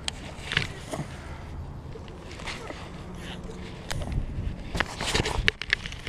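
Scattered clicks and knocks of fishing gear being handled aboard a kayak, over a low steady hum.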